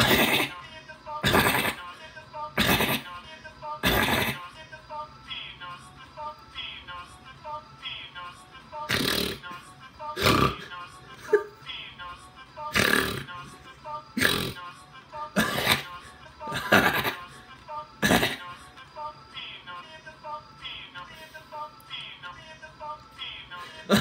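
A man's laughter played back slowed down: deep, drawn-out 'ha' sounds about every second and a half, in two runs with a gap between them, over slowed music, coming from a computer's speaker.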